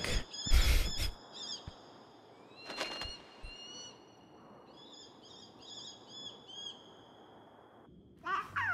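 Bird cries from an anime soundtrack: high, whistling calls, a couple of long drawn-out glides and then a run of short arched cries repeated several times. A brief rush of noise about half a second in is the loudest moment.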